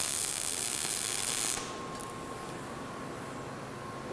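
MIG welding arc in short-circuit transfer running on a steel root pass, then cutting off about a second and a half in as the pass is finished; a fainter steady hiss remains.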